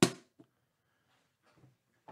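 A small white cardboard card box set down on a padded desk mat with one sharp thump, followed by a light click about half a second later.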